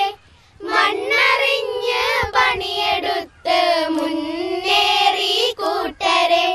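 A small group of schoolgirls singing together, holding long gliding notes in phrases with short breaths between them.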